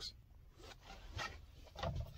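Faint rubbing and handling noises with a few soft ticks, in a quiet pause.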